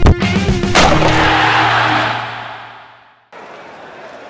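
Rock-style intro jingle ending on a final hit with a crash that rings out and fades over about two seconds, then a sudden cut to faint open-air stadium background noise.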